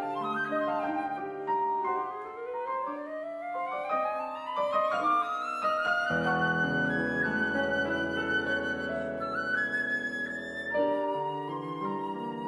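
Concert flute and grand piano playing classical music: the line climbs steadily for about four seconds to a long high flute note held over full, sustained piano chords with deep bass, and the deep bass drops away near the end.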